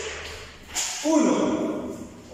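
A man's voice speaking briefly, with a short noisy rush just before it.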